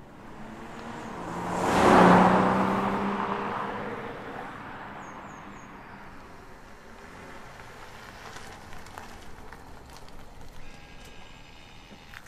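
BMW M340i's turbocharged straight-six petrol engine and tyres driving past: the sound swells to a loud peak about two seconds in, then fades slowly away down the road.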